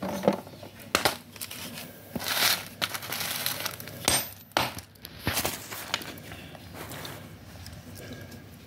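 A hammer striking pieces of dry grey clay on a plastic sheet: several sharp knocks and cracking snaps as the brittle, crunchy clay breaks, with the plastic sheet crinkling between blows.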